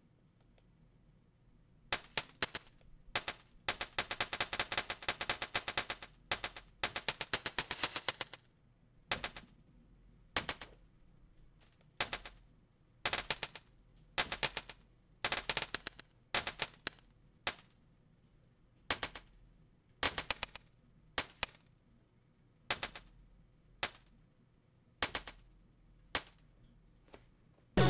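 Short percussive electronic sounds triggered from Maschine MK3 pads, played in bursts of rapid repeats that begin about two seconds in. The densest, fastest rolls come between about four and eight seconds, followed by shorter clusters of hits about every second.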